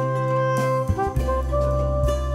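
Instrumental background music: a melody of held notes over a bass line.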